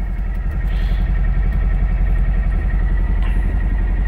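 Volkswagen engine idling steadily, heard from inside the cabin, with a faint thin high whine running along with it.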